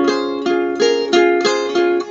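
Nylon-string requinto guitar: a quick run of about six finger-plucked chords on the middle strings, each ringing briefly before the next.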